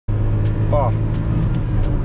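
Ford Ka's 1.0-litre three-cylinder engine running steadily at high revs under full throttle, heard from inside the cabin as the car accelerates at highway speed near the top of a gear.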